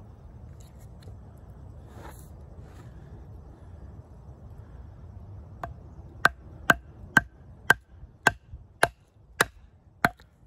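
A wooden baton striking the spine of a Schrade Old Timer 169OT fixed-blade knife about eight times, roughly two blows a second, starting about halfway through. The blows are batoning the blade down through a knotty log, which splits.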